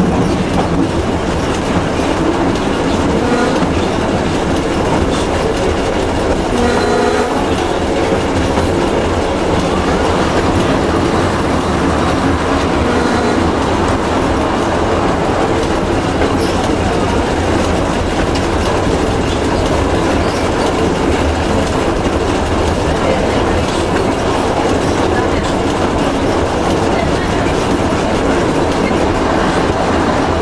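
A vintage train running along the track, heard from inside its driver's cab: steady running noise of wheels on rails and the engine, with a brief tone about seven seconds in.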